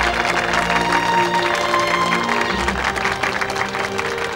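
A crowd of people applauding, dense steady clapping, over background music with held tones.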